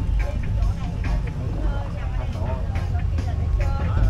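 Open-sided shuttle bus on the move: a steady low engine and road rumble, with a voice talking over it.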